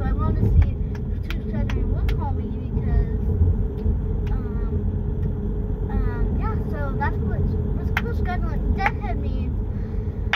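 Steady low rumble of a car on the road, heard from inside the cabin.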